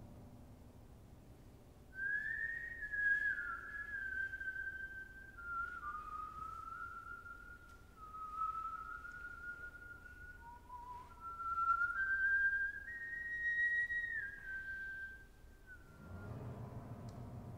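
A solo flute-like wind instrument playing a slow, high melody of long held notes in a pure tone, sliding and stepping between pitches. It starts about two seconds in.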